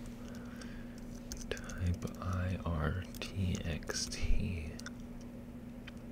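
Computer keyboard typing: scattered key clicks as a command is entered, under quiet mumbled speech and a steady low hum.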